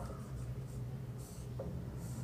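Marker pen writing on a whiteboard: short, faint, high-pitched strokes as the word is written, over a steady low hum.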